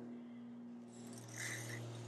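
Faint, steady low electrical hum, with a brief soft rustle about one and a half seconds in.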